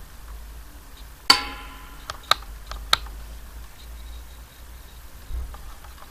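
A few sharp clicks and taps from handling: one loud click with a brief ringing tone about a second in, then three lighter clicks over the next two seconds, over a low steady hum.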